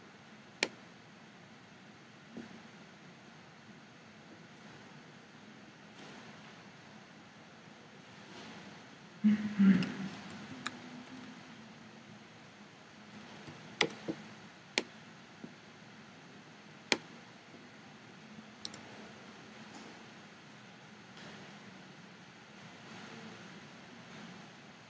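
Scattered sharp single clicks of a computer mouse and keyboard over faint steady hiss, with a brief louder, duller noise about nine seconds in.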